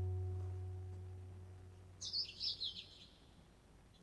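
A held low chord from the song's accompaniment fading away, then a brief run of high bird chirps, several quick falling notes, about two seconds in.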